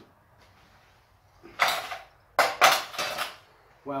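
Steel tongs and a freshly cast iron piece clattering and scraping against metal as the casting is picked out: two short bouts of metallic rattling, about a second and a half in and again around two and a half seconds.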